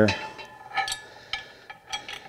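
A few light metallic clinks and knocks as a bolt is pushed through the steel bracket of a disc harrow gang: about three separate clicks.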